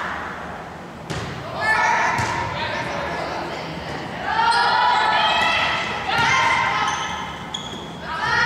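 Volleyball rally in a gymnasium: a sharp slap of the ball being served about a second in, then players' high voices calling and shouting on court in long drawn-out calls.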